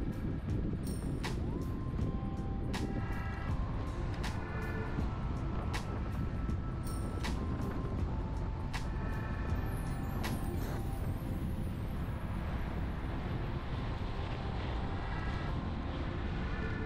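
Steady road and engine rumble of a moving car, with short high chirping tones and sharp clicks scattered over it.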